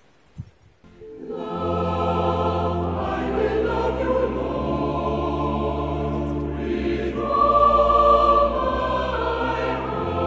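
Recorded choir singing a slow worship song over held low accompaniment notes, fading in about a second in after a brief quiet.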